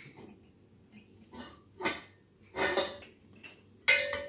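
Metal clatter from a stainless steel pressure cooker: its lid being handled and a steel ladle knocking and scraping inside the pot, in a few separate clinks and scrapes. A sharper clank just before the end rings on briefly.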